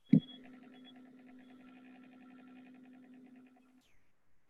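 A short low thump, then a faint steady buzzing hum with a fast, even flutter that stops shortly before the end.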